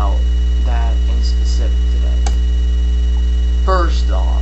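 Loud, steady electrical mains hum running under the recording, with a few short bits of quiet speech and a single click a little over two seconds in.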